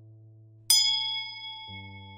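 A bright notification-bell chime sound effect rings once about two-thirds of a second in and dies away slowly, over a low held music chord that shifts near the end.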